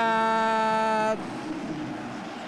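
A male sports commentator's voice holding one long, steady note on a drawn-out call for about a second, then stopping. Faint arena background follows.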